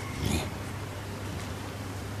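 Low steady hum in a pause between spoken phrases, with one brief short sound about a quarter second in.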